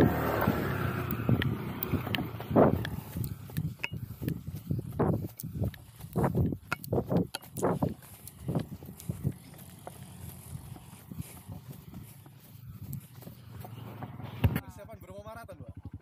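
Running footsteps on a sandy dirt road, regular thuds at roughly two a second, with wind rumbling on the microphone at first. A short burst of voice comes near the end.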